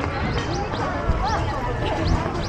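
Crowd of people walking and chattering, with several short, high rising chirps scattered through it and a low thump about a second in.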